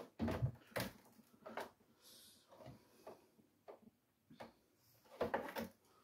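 Light, irregular plastic clicks and knocks from a white fridge interior panel being handled and shifted while its wiring is worked at, with a short louder clatter about five seconds in.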